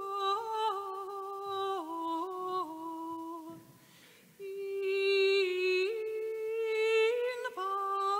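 A solo voice sings a slow, wordless-sounding hymn melody, holding each note and stepping in pitch between them. It stops for a breath about three and a half seconds in, then carries on.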